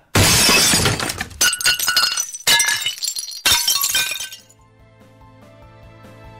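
Sound effect of glass shattering: a run of about four loud crashes with ringing shards over the first four seconds, then soft background music.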